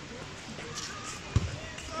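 A single short, dull thump about a second and a half in, over faint outdoor background with distant voices.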